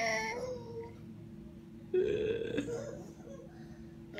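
A baby's voice: the tail of a high squealing laugh fading out at the start, then a short, lower vocal sound about halfway through that trails off.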